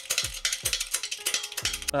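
A quick run of sharp metallic clicks and clanks from a hydraulic shop press being worked to press an inner sleeve into a polyurethane bushing. The clicking stops just before the two-second mark.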